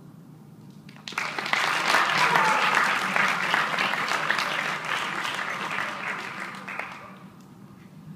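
Audience applauding at the end of a piece of music: the clapping starts suddenly about a second in, swells, then dies away near the end.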